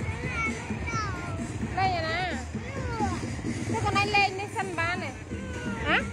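Music with a wavering singing voice, mixed with the calls and chatter of children and adults.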